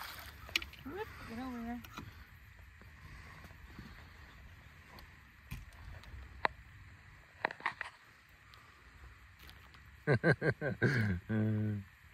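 A quiet stretch broken by a few faint, short clicks and knocks, then a person laughing in several short bursts near the end.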